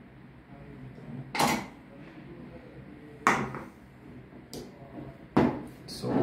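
Hand-probe spot welder firing weld pulses through its copper probes into nickel strip on lithium cells: three short, sharp cracks about two seconds apart.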